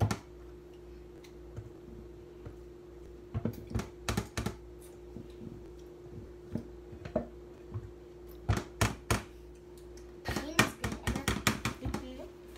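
Silicone spatula scraping and tapping against a mixing bowl: clusters of quick clicks and knocks a few seconds apart, over a faint steady hum.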